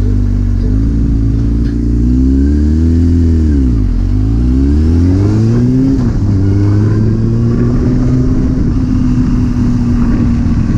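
Sport motorcycle's engine idling, then pulling away: the revs climb, drop sharply about four seconds in at a gear change, climb again, and settle to a steady cruise after about six seconds.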